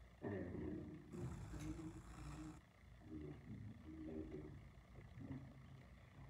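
A man's low voice speaking quietly, with a rustle of paper lasting about a second and a half, starting about a second in, as pages are handled.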